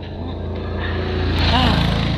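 A motorcycle engine running steadily, growing louder over the first second and a half, with a brief voice near the end.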